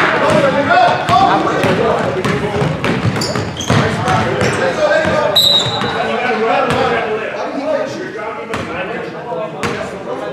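Basketball being dribbled on a hardwood gym floor, sharp repeated bounces echoing in a large hall, over voices of players and spectators. A brief high note sounds about five and a half seconds in.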